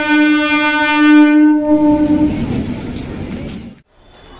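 Electric local train (EMU) sounding its horn in one long, steady blast that ends about two seconds in, followed by the running rumble of the train coming into the platform, cut off abruptly near the end.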